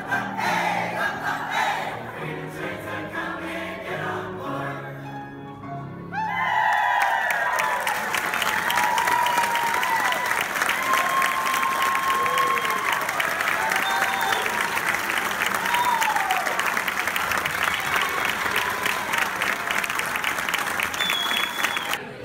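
A high school choir singing the closing bars of a song. About six seconds in, the audience breaks into loud applause mixed with cheering, and it keeps going.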